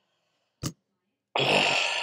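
A man gives a long, breathy sigh starting just past halfway and fading out at the end, preceded by one brief sharp mouth or throat sound.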